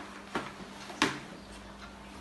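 Two sharp knocks, about two-thirds of a second apart and the second louder, from objects being handled on a dining table as a Bible is laid down and a cloth cover is lifted off a communion tray. A faint steady hum runs underneath.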